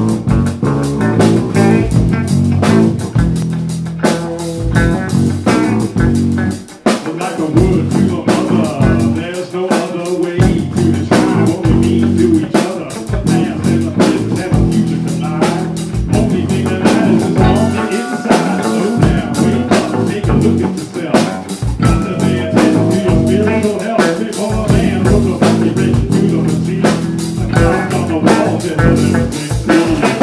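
Live band playing an instrumental passage: electric guitar over a drum kit keeping a steady beat, with a brief drop in loudness about seven seconds in.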